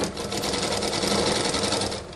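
Sewing machine running at speed, stitching cloth pieces together in a fast, even run of stitches over a steady hum; it slows and stops near the end.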